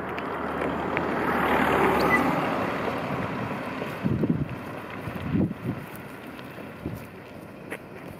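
Wind rushing over the microphone, swelling to a peak about two seconds in and then easing, with a few low gusting buffets later on.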